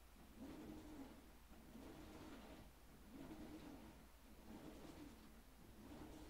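Near silence, with a faint low cooing repeated about once a second, from a pigeon-type bird.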